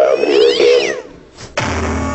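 A man's voice letting out a high, cat-like yowl, with whistling tones sliding up and down across each other; it breaks off about a second in. About half a second later a loud burst with a deep low tone starts.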